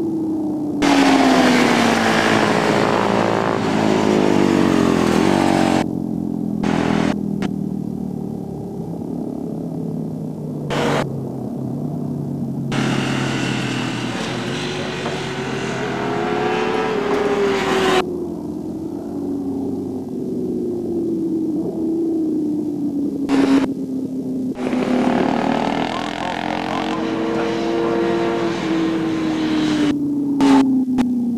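Racing sportbike engines revving up and down around a road course, their pitch sliding down and back up several times. There are stretches of rushing hiss over the engine note.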